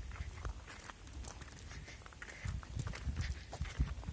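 Quiet footsteps of someone walking while carrying the camera: scattered small clicks, then heavier low thumps from about two and a half seconds in.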